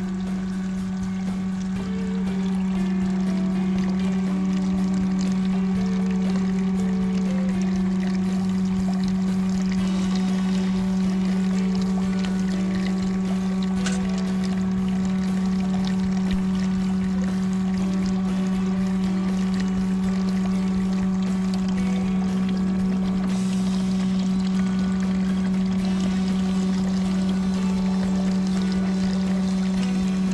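Steady low hum with water pouring, from the small pump that circulates water through a hose over an anesthetized white bass's gills during surgery. Background music plays over it.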